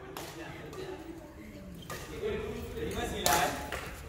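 A badminton racket hitting a shuttlecock once, about three seconds in, over faint voices in the hall.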